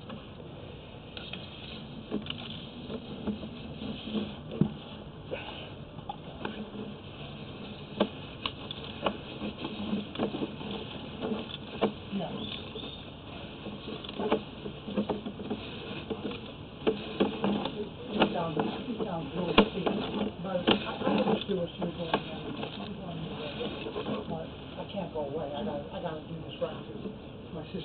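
Irregular light clicks and knocks over a steady hiss as a sewer inspection camera's push cable is fed down the pipe, with faint muffled voices in the background.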